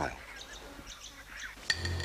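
Faint, short bird chirps over quiet outdoor background. About 1.7 seconds in, a sharp click is followed by a steady low hum.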